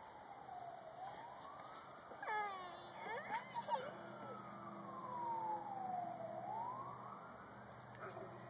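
An emergency vehicle siren wailing, its pitch sliding slowly up and down in sweeps of about three seconds each. A couple of short high-pitched calls break in around two and three seconds in.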